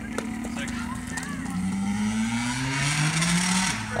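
Dirt bike engine revving up, its pitch climbing steadily for about two seconds, then dropping suddenly near the end.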